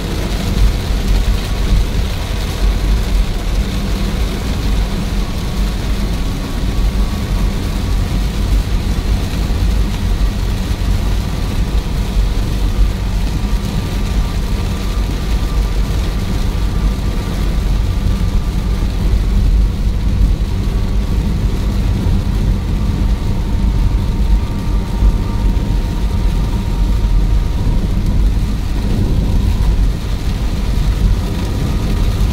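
Steady cabin noise of a car driving on a wet highway in heavy rain: low road and tyre rumble, with rain hiss on the car body and windscreen.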